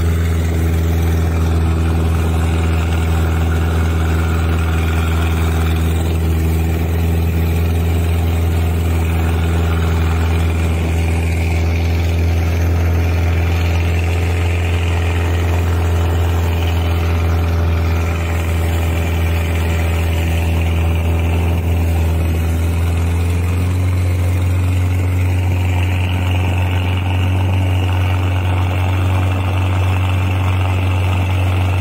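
Engine of a wooden motor river boat running steadily under way, with water rushing along the hull. The engine note steps up slightly about three-quarters of the way through.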